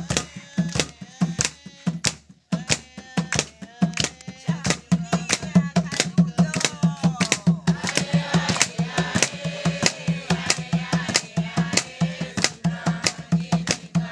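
A skin-headed hand drum beaten in a fast, steady rhythm, about three to four strokes a second, with voices singing over it; the drumming breaks off for a moment about two seconds in.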